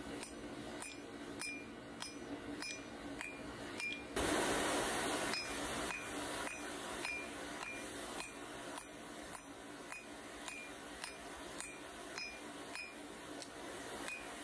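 Hand hammer striking a glowing bar of bearing steel on an anvil, about three blows a second, each with a high metallic ring. About four seconds in, a louder burst of rushing noise lasts a little over a second.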